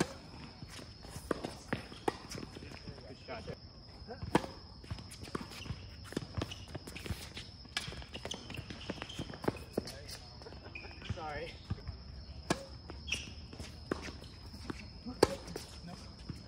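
Tennis balls struck by racquets during doubles play on a hard court, sharp pops at irregular intervals a second or two apart, with a steady high-pitched hum underneath.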